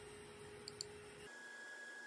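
Near silence: faint room tone with a thin steady hum, and two tiny ticks just under a second in.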